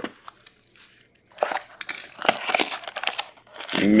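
Plastic shrink wrap on a trading-card box being crinkled and torn off, a dense crackling from about a second and a half in, after a few light taps.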